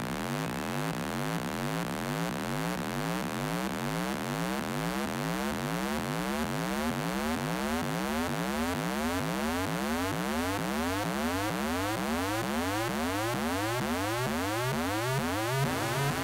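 Electronic dance music from a live DJ set: a synthesizer riser made of repeated upward pitch sweeps, about two or three a second, slowly growing louder.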